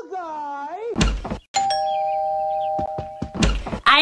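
A man's drawn-out yell, rising and then falling in pitch, broken off by a short thump about a second in. Then a doorbell chime holds two steady tones for nearly two seconds, followed by another brief thump.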